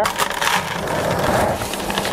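Dry castable refractory mix pouring out of a cut-open plastic bag into a plastic five-gallon bucket: a steady, even rushing hiss of granular material.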